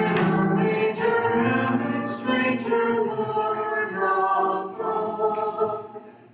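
A small mixed group of men's and women's voices singing a song together, with a phrase ending and a short breath gap near the end.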